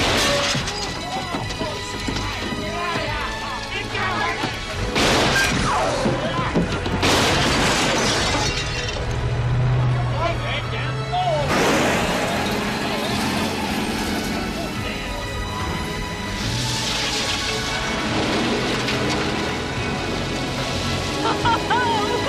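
Film soundtrack of a shoot-up. Several sharp gunshots and smashes with glass shattering, about 5, 7 and 11 seconds in, come over men's yelling and dramatic music. Near the end there is a woman's laughter.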